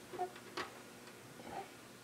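A few faint, separate clicks scattered over about two seconds, over quiet room tone.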